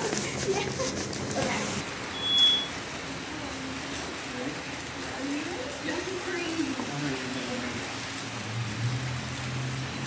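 Soft, indistinct voices murmuring over a steady hiss of rain, with a short high beep about two seconds in.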